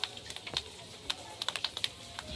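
Small hailstones striking wet ground and a puddle: irregular sharp ticks, several a second.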